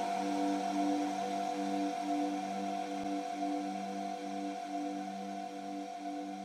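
Ambient electronic music: a held synth chord with low notes pulsing a little over twice a second, slowly fading out.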